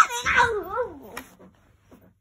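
A young child's wordless, drawn-out vocal sound with a meow-like quality, its pitch wavering up and down and sinking, lasting about a second and a half.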